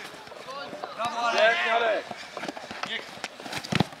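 Shouted encouragement ('Brawo!') from the sideline of an outdoor football pitch, with a sharp thud near the end from a challenge for the ball.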